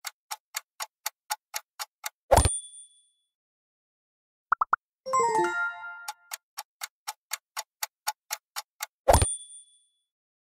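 Quiz countdown sound effects: a clock ticking about four times a second, ending in a thump with a bright ding. After a short triple blip and a quick falling run of chime notes, the ticking starts again and ends in a second thump and ding near the end.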